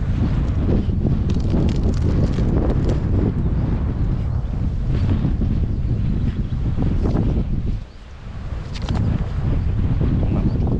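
Wind buffeting the microphone: a heavy low rumble that eases for a moment about eight seconds in.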